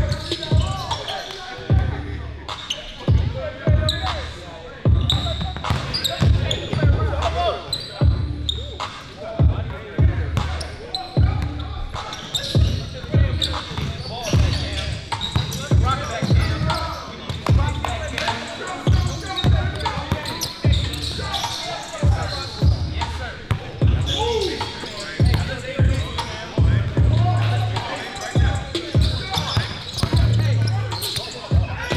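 A basketball being dribbled on a gym floor: repeated sharp bounces at an uneven pace in a large hall, with voices behind.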